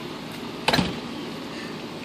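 A water balloon bursts once with a sudden sharp splat, a little under a second in, over a steady background hiss.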